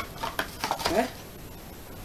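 A light knock and a few small handling taps as a cardboard box of sticker packets is picked up and set aside.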